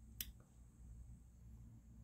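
Near silence: room tone with a faint low hum, broken by one short click just after the start.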